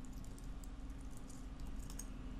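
Faint computer keyboard typing: a few scattered key clicks over a low steady hum.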